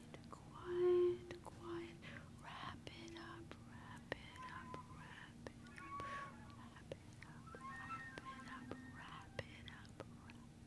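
A woman's whispered, breathy vocal sounds into a microphone in a quiet improvised vocal piece, with a few short low tones in the first few seconds (the loudest about a second in) and faint clicks scattered throughout.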